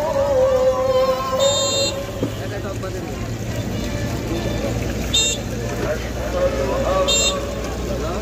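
Busy street ambience around a roadside frying stall: a steady low traffic rumble with horn-like toots, a few short high rings, and voices in the background.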